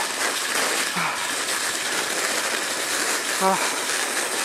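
Steady rushing hiss of a sled speeding downhill over packed snow at about 30 km/h, the runners sliding continuously.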